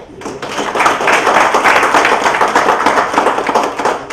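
An audience applauding, a dense patter of many hands clapping that builds over the first second and then holds.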